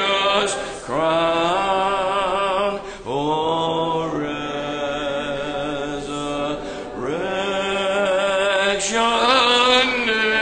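Congregation singing a hymn in long held notes, with short breaks between phrases about one, three and seven seconds in.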